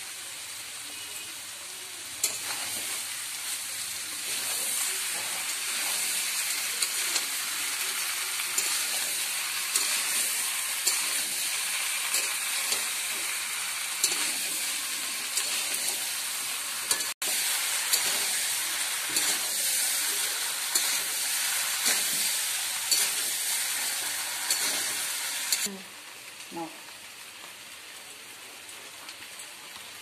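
Potato chunks sizzling in hot oil in a steel kadai while a spatula stirs and scrapes them, sautéing them with the spice masala. The sizzle grows louder about two seconds in, breaks off for an instant near the middle, and falls much quieter near the end.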